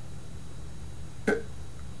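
A pause in a man's talk. A low, steady hum runs under it, with one short vocal sound from him, a quick intake or catch in the throat, about a second and a quarter in.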